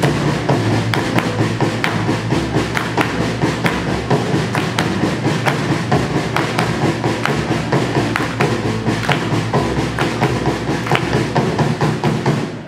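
Live band in an instrumental break: drums and keyboard keep a steady beat, with hand claps along to it.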